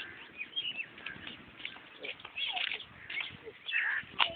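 Small birds chirping in short, irregular calls, mixed with a person's voice.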